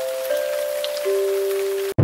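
Logo-sting sound effect: a steady hiss with two or three held electronic tones layered over it, stepping down in pitch, all cutting off abruptly just before a deep low hit at the very end.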